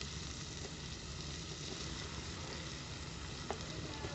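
Diced calabresa sausage and onion sizzling in oil in an open aluminium pressure-cooker pot as chopped tomato is added, a steady frying sound with one light tap about three and a half seconds in.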